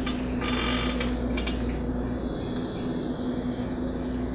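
Lecture-room background: a steady low electrical hum, with a brief scratchy rustle about half a second in and a couple of faint clicks.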